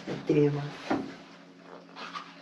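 A woman's short voiced sound, then a single sharp click about a second in, over a faint steady low hum.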